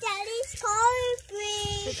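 A young child's high voice calling out in three long, drawn-out sing-song notes.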